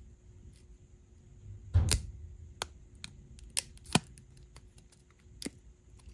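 Flush cutters snipping the tab off a foil sachet, with the foil crinkling in the hand: a few separate sharp clicks, the loudest about two seconds in.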